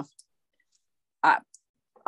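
A woman's hesitant voice in a pause mid-sentence: a short syllable about a second in, with faint mouth clicks around it.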